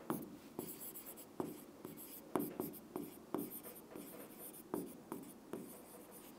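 A pen stylus writing on an interactive smart board: faint, irregular taps and soft scratching as strokes are drawn, about ten light taps in all.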